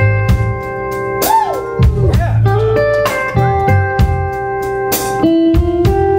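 Live blues-rock band playing an instrumental passage: an electric guitar lead with held notes and one bent up and back down about a second in, over electric bass and a steady drum beat.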